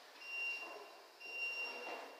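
Two high electronic beeps, each about half a second long and a little under a second apart, over faint background noise.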